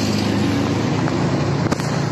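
Steady running noise of a moving road vehicle in traffic: a low engine hum under road noise, with a short click near the end.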